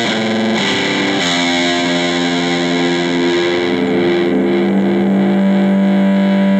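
Acoustic guitar playing the song's closing bars without singing: a chord strummed at the start and another about a second in, then notes left ringing and sustaining into a held final chord.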